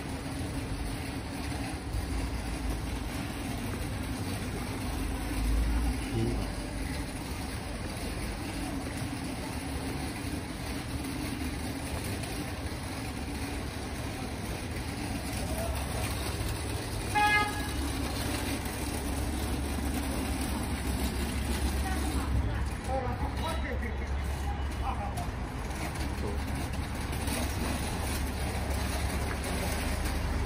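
Street traffic: a steady low rumble of vehicles, with one short vehicle horn toot a little past halfway.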